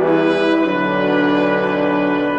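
Brass section with trombones playing held chords, the harmony shifting just after the start and again under a second in.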